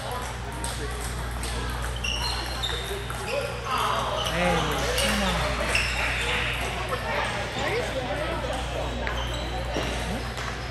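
Celluloid-style plastic table tennis balls clicking off paddles and tables in irregular rallies, several at once, over a steady low hum. Voices talk in the background, loudest in the middle.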